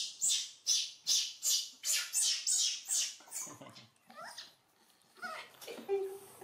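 Baby macaque giving a run of high-pitched squealing cries, about two or three a second, which fade out after about three and a half seconds: a hungry infant crying for its milk.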